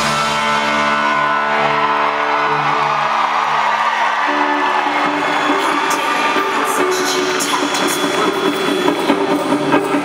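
Live rock-and-roll band holding a chord that rings for about four seconds after the drums drop out, followed by crowd cheering and whoops, with sharp hits near the end.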